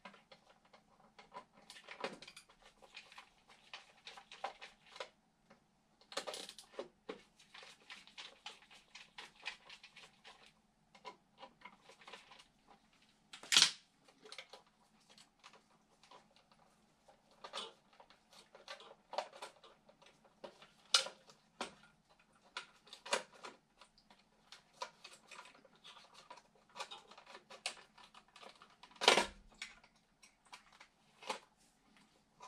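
Hands working on an oil burner's primary control box and its wiring: irregular clicking, tapping and rustling, with a few sharper knocks, the loudest about 13 s in and near the end. A faint steady hum runs underneath.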